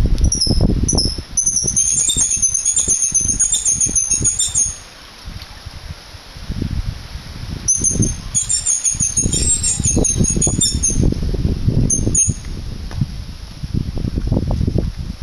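Wind buffeting the microphone of a camera carried on a moving bicycle: a loud, fluttering low rumble that drops away briefly about five seconds in. Over it, a high, wavering whistle-like squeal comes in two longer stretches and once briefly near the end.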